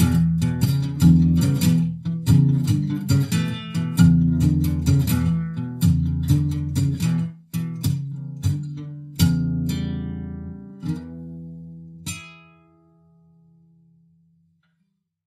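Acoustic guitar strummed, closing out a song: steady chord strums that thin out and slow, then a last chord about twelve seconds in that rings briefly and dies away.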